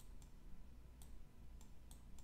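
About four faint, sharp clicks spread over two seconds, over quiet room tone with a low hum.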